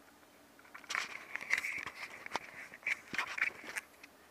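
Scratchy scraping and sharp clicks of hands working the jammed, extended lens barrel of a Canon PowerShot S100 compact camera, close to the microphone; the lens is stuck out after the camera was dropped in a fall and shows a lens error.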